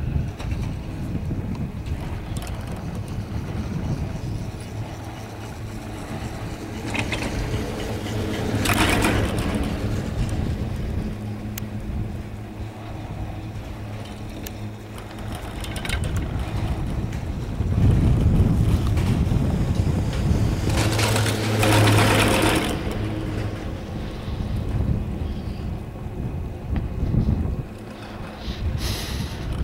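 Riding a high-speed chairlift: wind on the microphone over the steady low hum of the running lift, with two louder rushes about nine seconds and about twenty seconds in.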